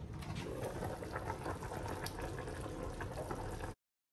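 Chicken soup boiling in a covered stainless-steel pot: a faint, steady bubbling with small pops, which cuts off suddenly near the end.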